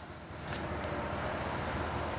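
Steady outdoor background noise, a low rumble with a faint hiss, growing slightly louder about half a second in.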